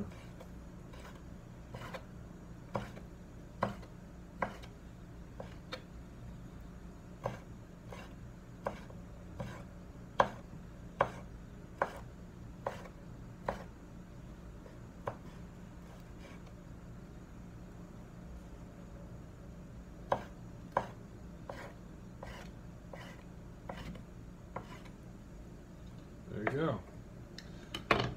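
Chef's knife chopping raw beef on a wooden cutting board: the blade knocks on the board in irregular strokes about once or twice a second, stops for a few seconds around the middle, then picks up again with a few more strokes, over a low steady hum.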